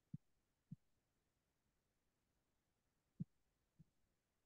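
Near silence broken by four soft, low thumps, two in the first second and two more near the end: a stylus tapping on a tablet screen while handwriting.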